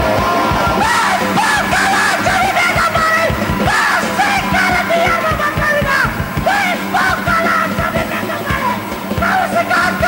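Punk rock band playing live: distorted electric guitar, bass and drums, with a male singer's vocals coming in about a second in and running through the song.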